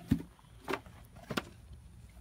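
Three short wooden knocks, about half a second apart, as a wooden frame is lifted out of a wooden beehive box and handled with a hive tool.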